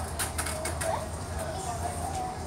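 Charcoal stick scratching on drawing paper: a handful of quick, scratchy strokes in the first second, over a steady low hum.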